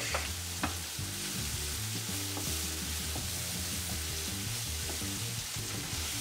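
Vegetables sizzling in hot olive oil in a frying pan while being stirred with a wooden spatula, with a steady hiss and a few light clicks of the spatula against the pan.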